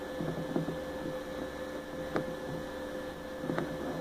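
Slow, faint footsteps with a few soft knocks over a steady electrical hum.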